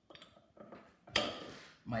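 A single sharp clink of kitchenware on the worktop about a second in, dying away quickly.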